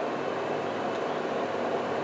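Steady background hiss with a faint hum, even and unchanging, like a running fan or air conditioner in a small room.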